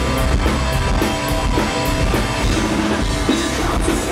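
Live pop-punk band playing: distorted electric guitars, bass guitar and a drum kit keeping a steady driving beat with regular cymbal hits.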